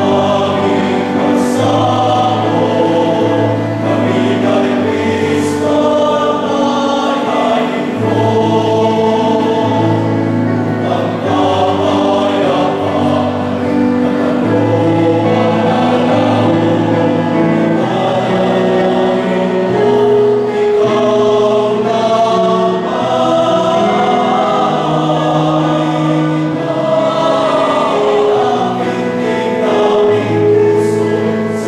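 All-male choir singing in several-part harmony, with long held notes over a low bass line.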